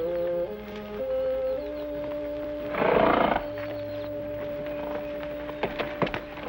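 Background music of long held chords, with a horse calling loudly about halfway through, then a few hoofbeats near the end as horses move off.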